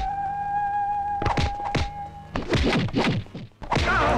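Film background score: a held high tone punctuated by deep drum hits that drop in pitch. A quick run of several hits follows, then a brief break, and the full music comes back in near the end.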